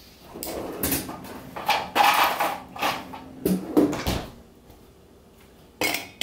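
Ice cubes being handled and added to a cocktail shaker, with irregular rattles and knocks of kitchen handling, then a couple of sharp clicks near the end.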